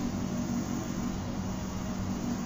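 Steady background room noise: an even hiss with a low, constant hum beneath it.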